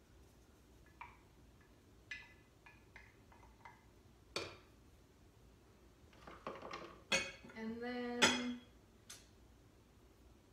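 Kitchen utensils clicking and knocking: a spatula scraping and tapping molasses out of a measuring cup into a stainless steel saucepan, with light clicks at first and a sharp knock about four seconds in. Then comes a louder clatter of dishes and containers being handled and set down on the counter, with several knocks near the end.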